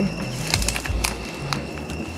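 Crickets trilling steadily at a high pitch, with scattered clicks, rustles and low thumps from people moving through dry grass and brush.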